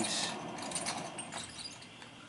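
Wet hands and a tool handling clay on a spinning potter's wheel: a short hiss at the start, then faint rubbing and a few small clicks.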